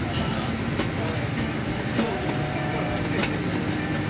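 Airport apron shuttle bus under way, heard from inside the cabin: a steady engine and road rumble with light clicks and rattles from the bus body.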